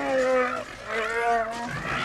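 Chewbacca's Wookiee yell, the film sound effect built largely from bear recordings: two drawn-out, wavering growling calls, the second starting about a second in.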